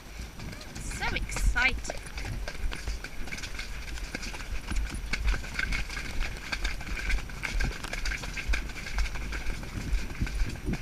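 A pony's hoofbeats on a wet, muddy stony track, the pace picking up into a canter. A short wavering cry sounds about a second in.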